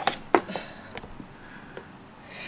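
Oat milk carton handled and poured over a mug of tea: two sharp knocks in the first half-second, then a quiet stretch with a faint hiss.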